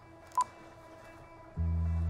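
A single short beep from a cordless phone handset's key, as the call is hung up. About one and a half seconds in, a low sustained music drone starts abruptly.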